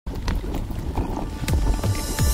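Electronic music with deep bass hits that drop in pitch, one about one and a half seconds in.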